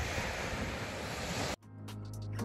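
Wind buffeting the microphone over the wash of sea surf, cutting off suddenly about one and a half seconds in. Background music then fades in.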